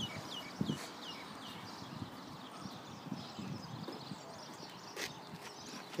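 A small bird chirping over and over, short falling high notes about three a second, with a few soft footsteps.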